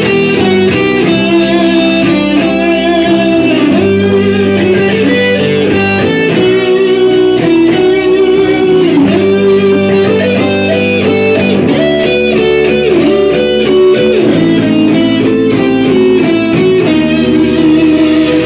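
Heavy metal band playing live in an instrumental passage, with an electric guitar leading, holding notes and bending their pitch over the band.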